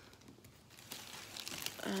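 A bag crinkling and rustling as items are pulled out of it, faint at first and busier from about a second in.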